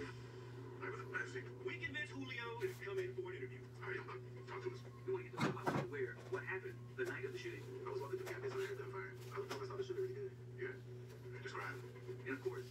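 Faint, indistinct television dialogue playing in the room over a steady low hum, with a single knock about five and a half seconds in.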